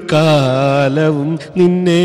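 A man singing solo into a microphone, a slow melodic line of long held notes that glide between pitches, in two phrases with a brief break a little past the middle.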